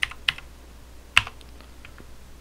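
Computer keyboard being typed on: a handful of separate keystrokes as a search word is entered, with one louder click a little over a second in.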